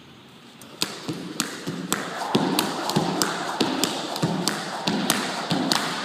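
Jump rope doing double unders on a hard floor, starting about a second in. The rope strikes the floor in sharp slaps about three times a second, two passes to each jump, between the duller thuds of shoes landing.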